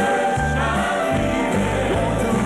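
Gospel song with a choir singing over piano accompaniment, the bass notes stepping along about twice a second.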